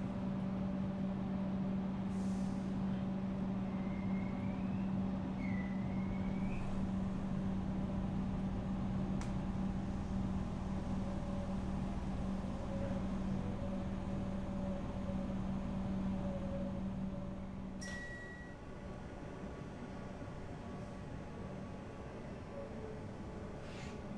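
Inside a Comeng electric suburban train carriage: running noise with a steady low hum, two short rising squeals about four and six seconds in, and a sharp click at about eighteen seconds, after which the hum stops and it gets quieter.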